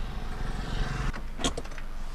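Road noise inside a moving car's cabin: a steady low engine and tyre rumble with a hiss. A little over a second in the noise changes, and a brief pitched sound with a couple of clicks follows.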